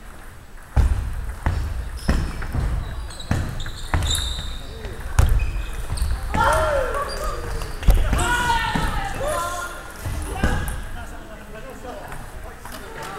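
Irregular low thumps of footsteps on a wooden sports-hall floor, with a few short, high shoe squeaks. Voices talk in the second half.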